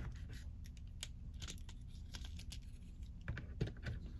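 Faint, irregular plastic clicks and taps from hands handling and posing a plastic S.H.Figuarts action figure.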